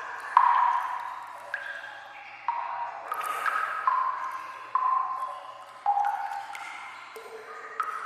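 Water drops falling into pooled water in an echoing sewer tunnel, about one a second at irregular intervals, each a pitched plink at a different pitch that rings out briefly.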